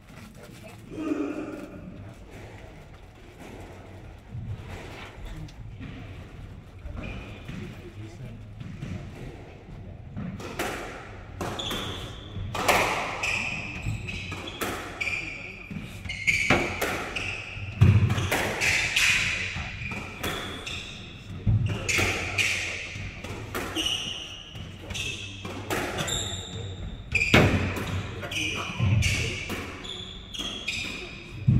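Squash rally: the ball cracking off rackets and walls, with sneakers squeaking on the wooden court floor and heavier thuds now and then. It starts about ten seconds in, after a quieter pause between points.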